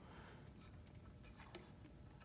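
Near silence: room tone, with a faint tick about one and a half seconds in.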